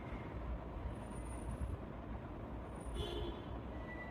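Steady low background rumble, with faint high squeaks about a second in and again near the three-second mark.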